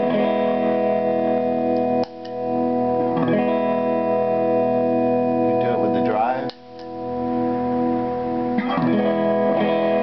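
Electric guitar played through a germanium PNP fuzz pedal set for a clean tone and heard through the amp: chords strummed and left to ring. The sound cuts off suddenly twice, about two seconds in and again past the middle, and swells back each time.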